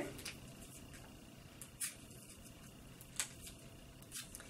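Faint crinkling of an Alka-Seltzer foil packet being torn open by hand: a few brief crackles, the clearest just before the middle and about three seconds in, over quiet room tone.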